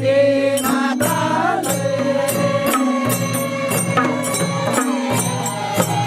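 Voices chanting a traditional folk song, with hand-played barrel drums beating a steady rhythm under it.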